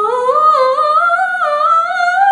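A woman singing solo, unaccompanied, in a classical operatic style. A new phrase begins right at the start, her voice stepping upward in pitch, with the held notes wavering in vibrato.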